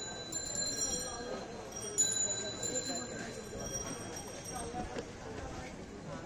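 Busy street-market ambience of many background voices, with a bicycle bell ringing: one ring fading out at the start and a second ring about two seconds in, each leaving a lingering tone.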